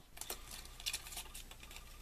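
Yellow cardstock being handled: a few faint, light ticks and rustles as the paper is moved by hand.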